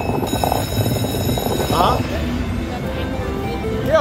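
Casino slot-machine sounds: electronic music and chiming tones over background chatter, with a short burst of chirping tones about two seconds in as the reels spin.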